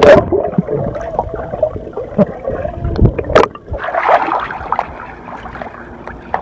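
A splash as the camera plunges into swimming-pool water, then a few seconds of muffled underwater gurgling. About three and a half seconds in it breaks the surface again into the open splashing and lapping of the pool.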